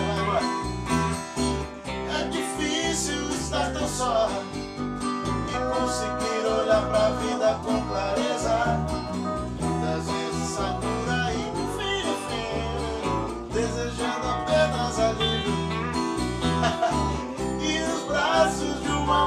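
A small band plays an instrumental passage of a country-rock song: acoustic guitar, electric guitar and bass, with a lap steel guitar playing gliding, sliding melody lines over them.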